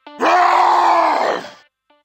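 A loud, drawn-out groan-like vocal sound lasting about a second and a half, set between the beats of electronic music.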